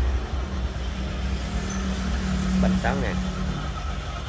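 Honda Vario 125 scooter's single-cylinder engine idling steadily, a low even hum.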